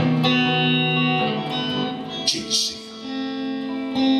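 Amplified hollow-body electric guitar strumming chords that ring on, with a brief lull a little under three seconds in before the next strum.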